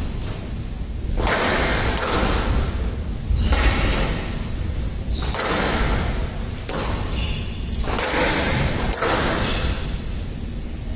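Squash rally: the ball struck by rackets and hitting the court walls, sharp thumps about every second or so, echoing in a large hall.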